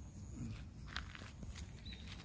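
A few light footsteps crunching on gravel, heard as short separate clicks about halfway through, over a steady low rumble on the phone microphone.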